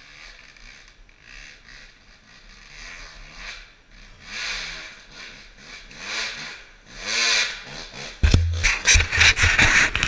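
A dirt bike approaching over rough ground, its engine revving up and falling back again and again and growing louder. In the last two seconds it is loud and close.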